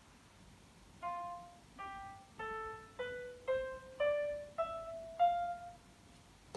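Piano playback of a music notation program (MuseScore) sounding each note as it is entered: eight short piano notes climbing stepwise from F up to the F an octave higher, roughly one every 0.6 seconds, with no accidentals yet added.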